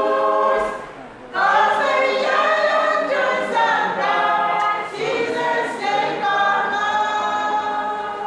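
A small choir of women's and men's voices singing a cappella, holding long sustained notes together. The singing breaks off briefly about a second in, then resumes.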